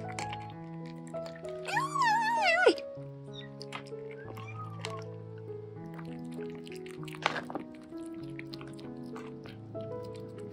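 Gentle piano background music, over which a four-week-old kitten gives one high, wavering meow about two seconds in, lasting about a second and dropping in pitch at the end. A fainter mew follows a couple of seconds later, and there is a sharp click near the seven-second mark.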